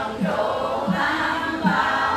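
Group of Buddhist nuns chanting a Vietnamese sutra together in unison, female voices on slow, evenly paced syllables.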